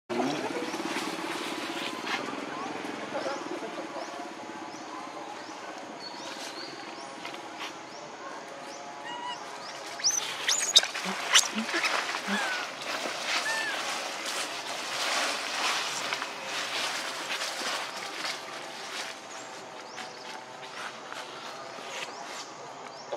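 Dry leaves rustling and crackling as baby macaques move through leaf litter, busiest from about halfway through, with a few short high squeaks near the middle over a steady low hum.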